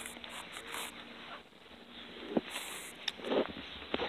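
Soft footsteps and rustling handling noise from a handheld camera being carried through a garden, with a small sharp click a little over two seconds in.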